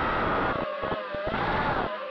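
FPV racing quadcopter's brushless motors whining loudly, the pitch sliding down and back up as the throttle changes during a flip, over a rush of air noise.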